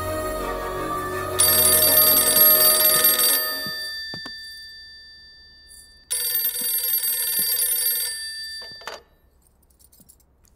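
An old-style telephone bell ringing twice, each ring about two seconds long, with a few seconds of silence between rings. Soft background music fades out as the first ring starts.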